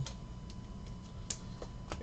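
Chrome trading cards being flipped off a hand-held stack, giving a few light ticks over a faint steady hum.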